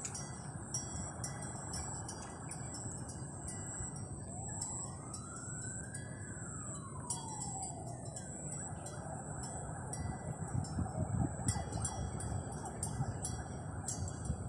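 Outdoor evening ambience with a steady high-pitched whine and hiss. About four seconds in, a distant siren rises and falls once over roughly four seconds, and later wind buffets the microphone in low rumbles.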